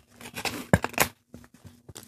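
A sheet of paper being handled and creased by hand: a few short, sharp crackles and taps, bunched in the first second, the loudest just before a second in.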